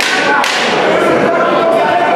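Boxing gloves landing punches: two sharp smacks in quick succession at the start, then a few lighter knocks, over spectators shouting in a large hall.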